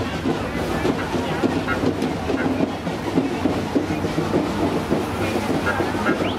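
Pickup truck's engine running slowly in low gear, a steady low hum, under the chatter and shuffling of a crowd walking alongside.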